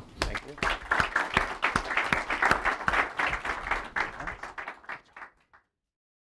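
Audience applauding, the clapping thinning out and then cutting off suddenly near the end.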